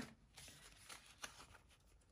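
Faint rustling of paper banknotes being handled, a few soft crinkles over near silence.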